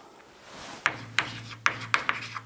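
Chalk writing on a blackboard: after a near-quiet first second, a run of sharp taps and scraping strokes as the letters are chalked.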